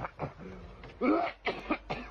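A person coughing several short times, with the strongest coughs about a second in and near the end.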